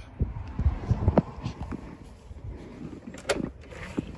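A front door being unlocked and opened: scattered low thumps and knocks, then a sharp latch click a little over three seconds in.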